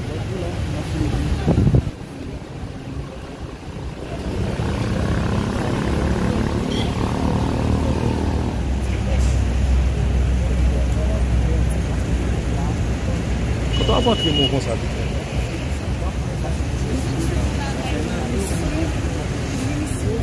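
A vehicle engine running with a low rumble that grows louder about four seconds in, under background voices; a sudden loud knock comes just before two seconds in.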